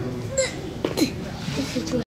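People talking, with a person's sharp cough partway through.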